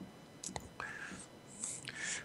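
Faint, breathy sounds of a person's voice: a few short, hissy sounds spread through a pause in speech.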